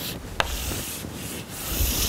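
Chalk scraping across a blackboard in long strokes as a box is drawn around an equation. There is a short tap of the chalk on the board about half a second in, and the scraping is loudest near the end.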